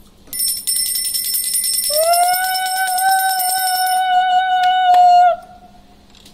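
A brass puja hand bell rung rapidly, joined about two seconds in by a conch shell blown in one long note that rises at its start, holds steady and stops abruptly near the end.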